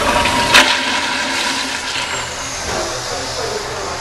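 Older Kohler Wellcomme toilet flushing: water rushing steadily through the bowl, with one sharp click about half a second in.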